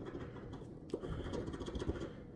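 A large metal coin scraping the scratch-off coating from a paper lottery ticket: quiet, rapid scratching strokes, with a single small tick about a second in.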